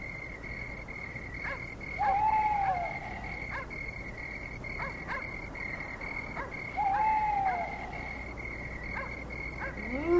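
Night-time animal ambience: a steady, high chirring like crickets, with scattered short croaks or clicks, and an owl-like hoot twice, about two seconds in and again about seven seconds in, each rising slightly and then falling.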